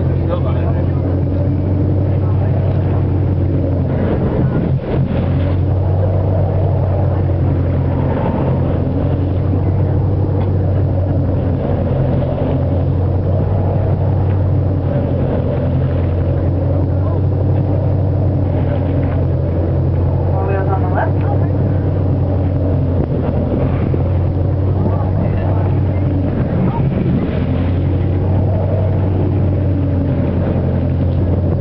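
A whale-watching boat's engine running at a steady low drone, with indistinct voices of people aboard over it.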